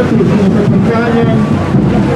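Crowd of voices singing together, several pitches wavering and overlapping, with wind rumbling on the microphone.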